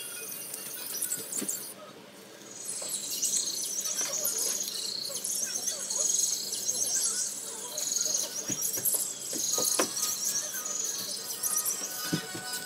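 High-pitched chirping in rapid repeated trills, starting about two seconds in, over faint background music. A few soft crinkles and taps of paper being creased come through underneath.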